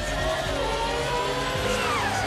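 Race car engines running at high revs, their pitch sliding, with one car passing and its pitch falling near the end.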